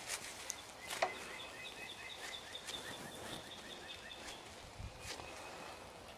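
Quiet outdoor background in which a bird chirps a run of short, evenly spaced high notes, about four a second, for roughly three seconds in the middle. A few soft taps and rustles come from hands pressing down a plastic-wrapped sandwich.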